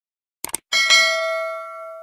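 Two quick mouse-click sound effects, then a notification-bell ding that rings on and fades away over about a second and a half.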